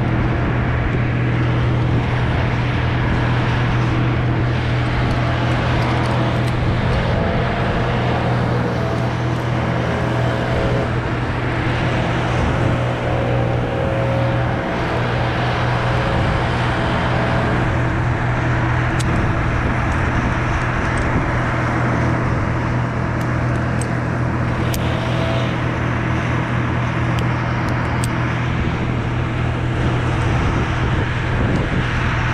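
A steady, unchanging engine drone, with a few light clicks near the end.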